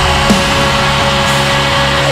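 Deathcore music: heavily distorted guitars and bass hold one sustained chord with a steady high note on top, the drum hits mostly dropped out.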